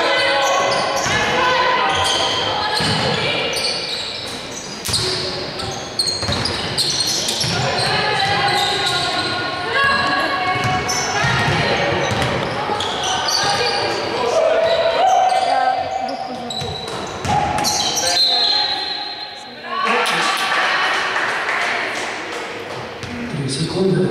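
Basketball dribbled and bouncing on a hardwood court in a large sports hall, in short repeated strikes, with voices in the hall throughout.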